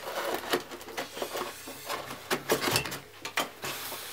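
Handling noise from a polystyrene foam box being turned over and set down on a wooden table: scattered light knocks, taps and rubbing of foam and wire.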